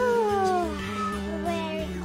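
A high, whining voice-like cry, a cartoon character's moan, that slides steadily down in pitch over about a second and a half, over background music.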